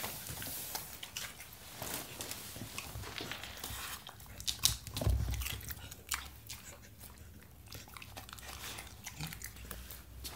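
Spanish water dog biting and chewing a raw red bell pepper: a run of crisp, wet crunches, busiest about four to five seconds in, with a dull thump about five seconds in.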